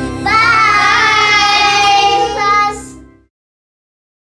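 Children singing together over backing music with a steady beat, ending on a held note as the music fades out about three seconds in.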